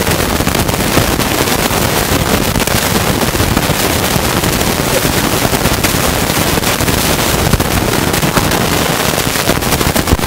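Loud, steady crackling static noise that runs without a break, like a faulty audio line.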